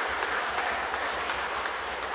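Steady applause from a church full of schoolchildren: many hands clapping.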